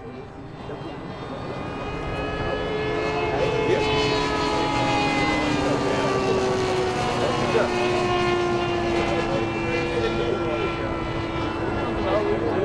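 The engine and propeller of a large 1:2.5 scale Speed Canard radio-controlled model airplane in flight. It grows louder over the first few seconds as the model comes closer, then holds a steady drone whose pitch sinks slowly as it flies by.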